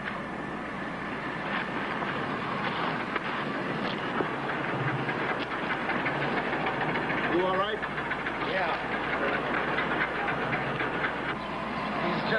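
Indistinct voices over a steady, dense background noise, with a few short rising and falling vocal sounds about halfway through.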